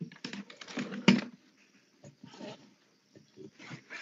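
Quiet computer keyboard typing over a voice-chat microphone: a quick, irregular run of clicks in the first second and a half, the strongest about a second in, then a few scattered clicks later on.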